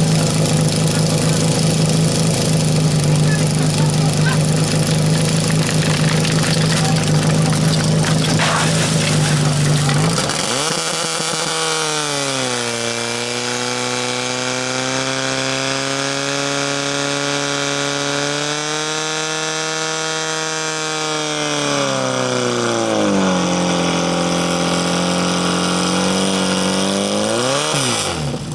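Portable firesport pump engine running hard at a steady high note; about ten seconds in its pitch drops sharply as the pump takes up the load of delivering water, then wavers, rising again near the end.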